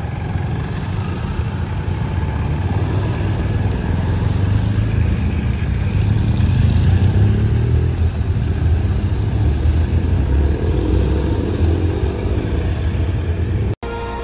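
Several BMW touring motorcycles riding past one after another at low speed, their engines running in a steady low rumble that swells in the middle as the bikes come closest. The sound cuts off abruptly just before the end.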